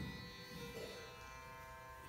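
Faint steady drone of several held pitches, the background drone of an Indian classical performance.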